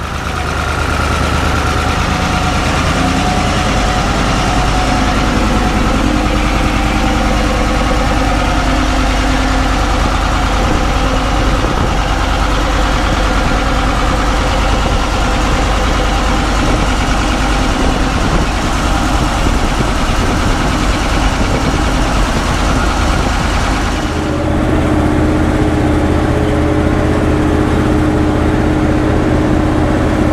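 Caterpillar 3208 V8 diesel engine of a New Holland 1890 forage harvester running steadily on a test run with a newly installed radiator. About 24 seconds in the sound changes abruptly to a different steady engine note.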